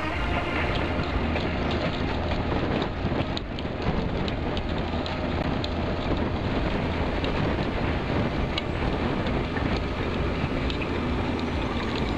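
Deutz-Fahr Agrotron tractor pulling a Kverneland reversible plough through a field: a steady engine drone under load mixed with the noise of soil being cut and turned over by the plough bodies, with scattered small clicks and knocks.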